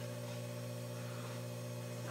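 Steady low hum of a running household appliance motor, holding one even pitch with no change.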